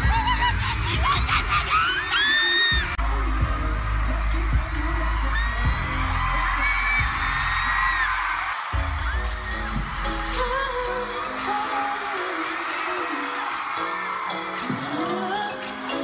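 Live amplified pop music in an arena, recorded on a phone, with heavy bass and singing, and fans screaming excitedly near the start. The bass cuts out for a moment about halfway through, then a steady beat of about two high ticks a second comes in.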